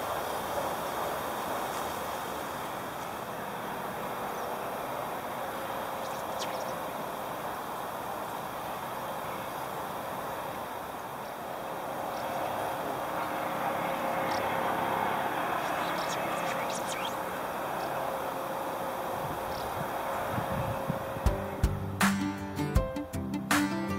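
Steady outdoor background noise that gently swells and eases, with a few brief high chirps.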